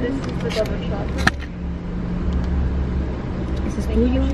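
Pickup truck engine idling steadily, heard inside the cabin as a low hum that grows a little stronger partway through, with one sharp click about a second in.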